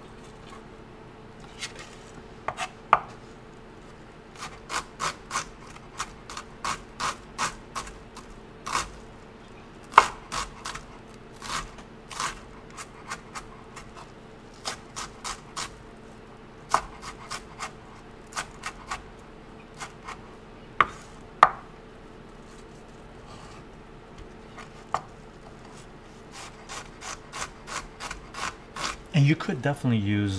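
Chef's knife chopping onion on a wooden cutting board: sharp knocks of the blade on the board in quick runs of several strokes, broken by short pauses and a few harder single chops.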